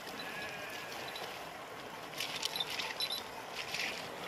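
Swimmers splashing in a river pool, a run of quick splashes from about two seconds in. A faint drawn-out animal call near the start.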